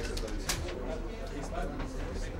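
Indistinct murmur of voices in a press-conference room, with a few sharp clicks, the loudest about half a second in.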